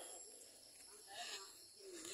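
Near silence: quiet outdoor night ambience, with a brief faint murmur, like a distant voice, just over a second in.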